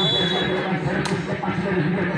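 A referee's whistle blast, one steady high tone, ending under a second in, then a single sharp smack of a hand striking a volleyball about a second in, over continuous crowd chatter.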